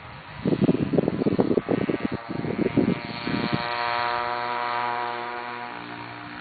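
Homelite ST-155 25cc two-stroke weedeater engine driving a bicycle by friction spindle, passing by at speed. It is loud and choppy as it goes close by, from about half a second in, then settles into a steady buzz that fades as it moves away.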